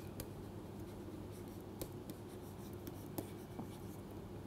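Faint taps and scratches of a stylus writing on a pen tablet, a scatter of light ticks over a steady low hum.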